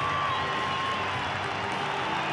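Stadium crowd applauding and cheering, a steady wash of clapping and voices. A single held high note fades out about a second in.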